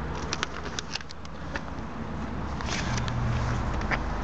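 A motor vehicle's engine running close by as a low steady hum, which swells about three seconds in, with a few light clicks scattered over it.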